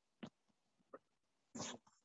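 Near silence in a pause between speech, with two faint short clicks and, near the end, a brief breathy noise like a person drawing breath.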